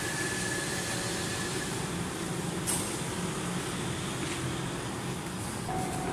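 Steady low rumble of a train in a railway station, with a thin steady tone that stops under two seconds in and a single click midway.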